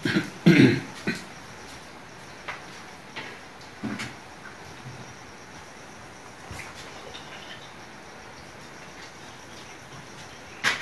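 A short, throaty vocal sound like a cough about half a second in, then a few faint knocks over a low steady hiss.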